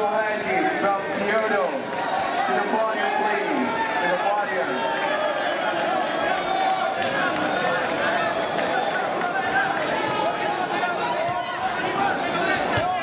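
Crowd of spectators, many voices talking and calling out over one another in a steady din.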